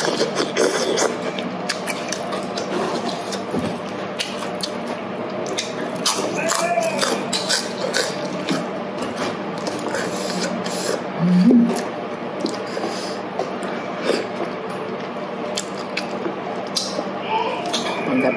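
Close-up eating sounds: rice vermicelli noodles and lettuce being chewed, with frequent wet mouth clicks and smacks over a steady low background hum. A short hummed sound comes about two-thirds of the way through.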